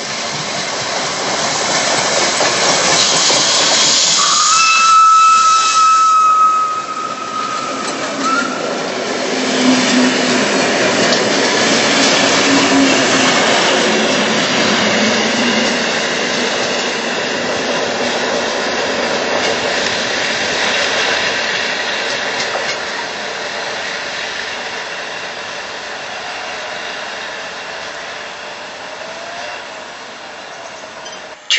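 Steam locomotive passing with its train of wooden passenger carriages: a steady hiss of steam and rolling wheels on rail, broken by one long, steady steam-whistle blast about four seconds in that lasts about four seconds. The noise dies away slowly as the carriages move off.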